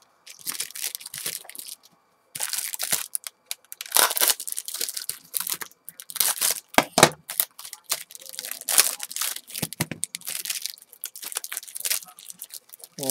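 Cellophane wrapper of a 1986 Fleer baseball rack pack crinkling and tearing as it is worked open by hand, in irregular crackles with short gaps.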